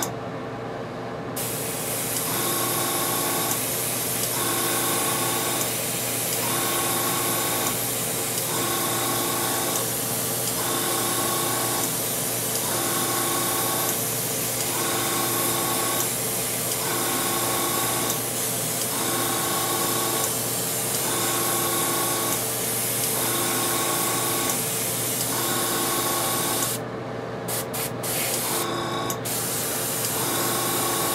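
Airbrush spraying paint on compressed air: a steady hiss that starts about a second and a half in and breaks off briefly twice near the end as the trigger is let go. Underneath, a humming tone pulses on and off about every two seconds.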